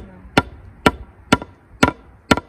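Claw hammer driving old, rusted nails into a pallet-wood frame: sharp strikes at a steady pace of about two a second, five in all.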